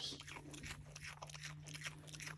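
Virginia opossum chewing food, a run of faint, quick crunching clicks, over a low steady hum.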